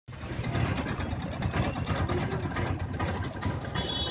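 A vehicle engine running steadily amid outdoor street noise, with faint high-pitched tones near the end.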